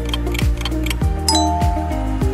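Background music with a steady beat under quiz countdown ticks, then about a second in a bright chime sound effect rings for the answer reveal.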